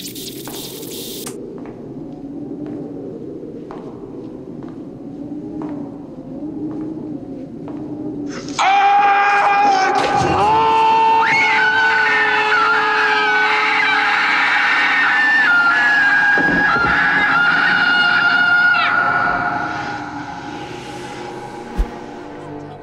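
Horror-film soundtrack: a quiet, tense low drone with a few faint knocks, then about eight seconds in a sudden loud jump-scare sting of shrill, dissonant sound and screaming. It holds for about ten seconds and then fades out.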